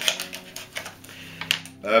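Plastic blister packaging being cut and pried open with a craft knife: a run of small, irregular clicks and crackles.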